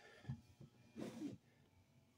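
Near silence: room tone with a few faint, short noises, one about a second in.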